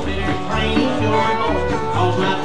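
Live rockabilly band playing an instrumental passage with no singing: upright bass notes about twice a second under acoustic rhythm guitar, electric guitar and steel guitar.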